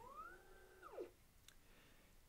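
Edelkrone Action Module's motor driving a Slider Plus camera carriage under joystick control: a faint whine that rises in pitch, holds, then falls away as the carriage stops about a second in. A small click follows.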